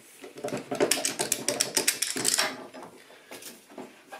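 Old steel bar clamp clicking and rattling rapidly as it is fitted and set down on a wooden shelf board, busiest in the first two and a half seconds, then a few lighter knocks.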